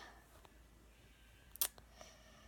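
A single sharp click about one and a half seconds in, with a couple of fainter ticks, over quiet room tone.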